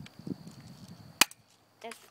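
A single sharp click from a pump-action Stinger P9T spring airsoft pistol firing, a little over a second in.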